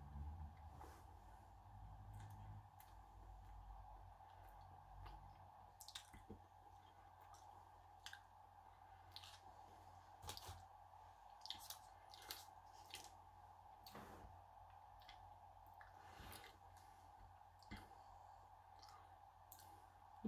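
Near silence: faint, scattered mouth clicks of someone chewing a chocolate with a liqueur centre, over a steady faint hum.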